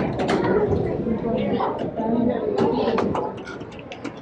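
Indistinct voices in a busy hall, mixed with the mechanical clicking and clatter of a model windmill's gears being turned.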